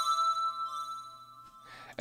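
A synthesizer chord of a few steady tones rings on and fades away over about two seconds.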